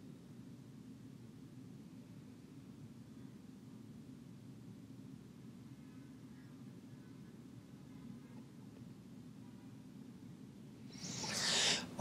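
Quiet room tone with a steady low hum. About a second before the end, a rustling noise close to the microphone swells as the handheld mic is picked up.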